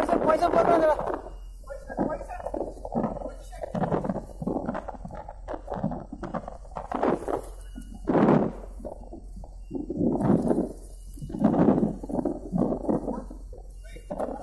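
People's voices talking and calling out in bursts, with a steady faint low hum underneath.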